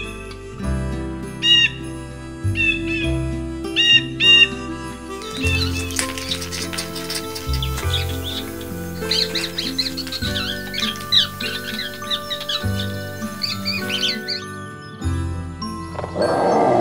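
Calm background music with sustained notes and a steady bass, overlaid with bird calls. There are a few short, high calls in the first seconds, then rapid, busy chirping from about five seconds in until near the end.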